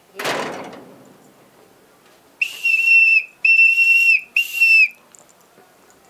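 A short burst of noise right at the start, then a whistle blown in three steady, loud blasts, the first about a second long and the last the shortest.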